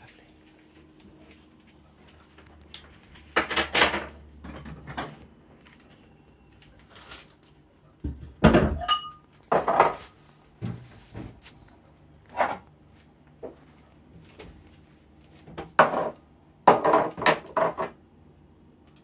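Kitchen clatter: dishes, utensils and jars knocked and set down on a worktop, in scattered clusters of sharp knocks and clinks, one clink ringing briefly about nine seconds in.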